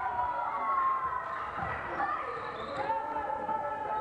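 Live basketball game sound in a large hall: the ball bouncing on the court with players' voices calling out.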